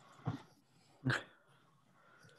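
A dog barking twice, about a second apart, the second bark louder, picked up over a video call.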